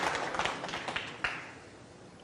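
Audience applause fading away over about a second and a half, with a single sharp crack just over a second in.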